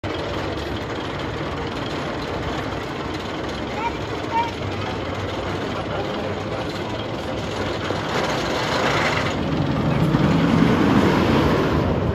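Steel Vengeance, a hybrid roller coaster with steel track on a wooden structure, heard from the ground: steady outdoor noise and voices while the train crests the lift hill. A louder rumble of a coaster train running along the track builds over the last few seconds.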